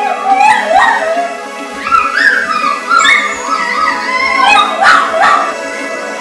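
A small puppy howling and yipping in a run of rising and falling calls, over background music.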